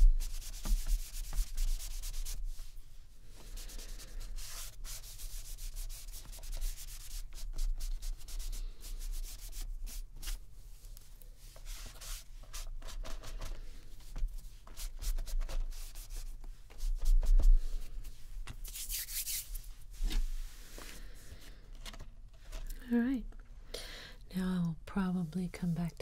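A small applicator rubbed back and forth over a paper art journal page, working ink into it in quick scratchy strokes, busiest in the first few seconds. A short hiss comes about three-quarters of the way through.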